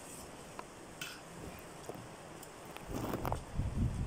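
Quiet room with a few small clicks of tableware as people eat by hand and with a spoon, then a run of low thumps from handling near the end.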